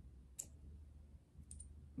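Near silence with one sharp click about half a second in and a couple of faint clicks near the end, from a small weapon-light attachment being handled in the hands.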